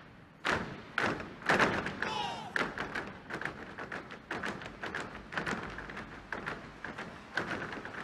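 Three heavy thuds about half a second apart end the huaylarsh dance music, and a short shout follows. Then an audience starts clapping, a steady patter of claps that carries on.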